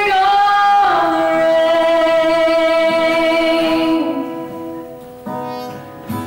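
A woman sings a long held note over acoustic guitar in a live country ballad. The note fades about four seconds in, and a new guitar chord is struck near the end.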